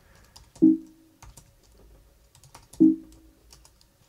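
Typing on a computer keyboard: scattered key clicks. Two short hums from a voice stand out, about half a second in and near three seconds.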